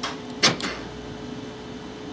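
Power door lock actuators clunking once, about half a second in, as the lock switch's orange wire is grounded through a test light to bypass the switch. A faint steady hum follows.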